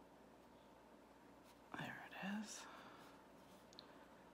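Near silence with faint room hiss, broken about two seconds in by a short, quiet whispered word or two from a woman.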